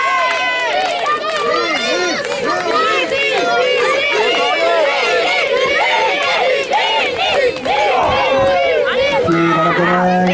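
Wrestling-match crowd of many high voices shouting and calling out together, with no pause.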